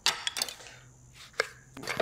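Kitchen knife cutting a lemon in half and knocking on a wooden chopping board: a sharp knock at the start, another about half a second later, then a few fainter clicks.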